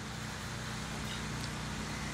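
Steady low background hum and hiss, the ambient noise of the venue and sound system during a pause in the announcements.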